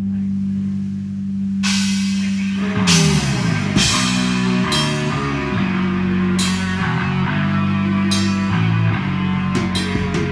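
Live black metal band beginning a song: held low guitar and bass notes ring alone at first, a cymbal crash comes in about a second and a half in, and the drums and full band take over about three seconds in.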